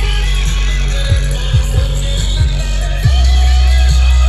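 Loud music with very heavy bass played over a mobile DJ truck's sound system rigged with 22 bass speakers, a beat striking about twice a second. The bass gets louder about three seconds in.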